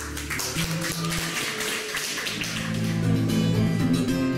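Acoustic guitars playing a song, strummed in quick, sharp strokes, with held notes ringing under them.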